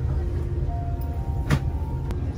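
Steady low drone of an airliner cabin under soft background music, with one sharp click about one and a half seconds in.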